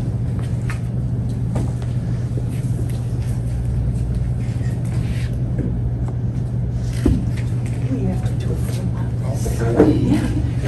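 Quiet, indistinct murmuring of people in a hall over a steady low hum, with a short knock about seven seconds in.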